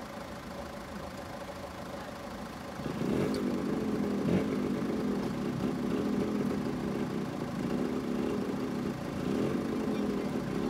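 An engine running steadily at idle, which sets in suddenly about three seconds in and is the loudest sound from then on.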